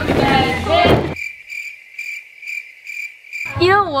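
Cricket chirping sound effect: one high chirp repeated evenly, about three times a second, with all other sound cut away. It is the comedic 'awkward silence' gag.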